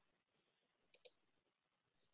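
Near silence, broken about a second in by a quick double click: a computer mouse button pressed and released, advancing the presentation slide.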